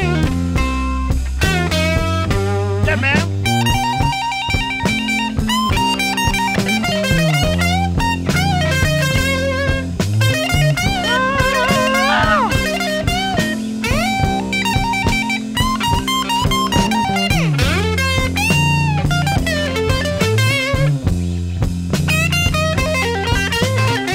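Electric blues guitar playing lead lines full of bent, sliding notes over a steady bass and rhythm backing, with no singing.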